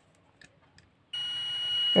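Digital multimeter's continuity buzzer sounding one steady high-pitched beep, starting about a second in, as its probes bridge the power supply's input fuse. The beep means the fuse has continuity and is good.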